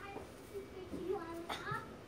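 Faint talking in the background, a child's voice among it, with a soft click about a second and a half in.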